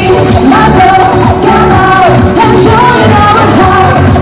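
A woman singing a pop song live into a handheld microphone, her voice carried over a pop accompaniment with a steady bass.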